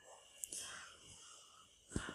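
Near silence in a pause in speech. About half a second in there is a faint mouth click and a soft breath in.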